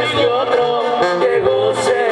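Mexican banda music: wind instruments playing a wavering melody over a low bass line that steps from note to note.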